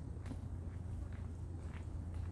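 Footsteps on a gravel trail: light, regular clicks about two a second over a steady low hum.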